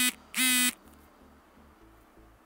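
Smartphone's incoming-SMS notification sound: two short buzzy beeps at one steady pitch, about half a second apart, announcing the OTP text message.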